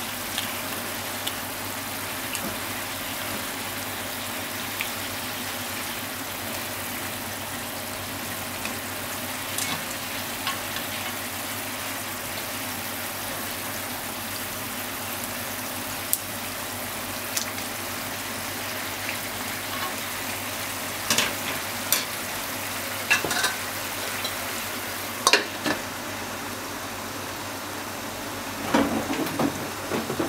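Daikon radish slices sizzling steadily in oil in a frying pan, with chopsticks clicking against the slices and pan now and then, most often past the two-thirds mark. Near the end comes a short clatter as a glass-and-metal lid is set on the pan.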